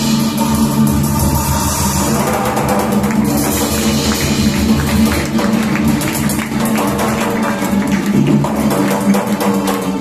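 Violin, cello and percussion playing together live, the strings' sustained lines over a dense, driving beat of drums.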